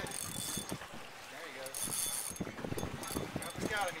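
Fishing reel clicking irregularly under load as a hooked fish is fought on a bent rod.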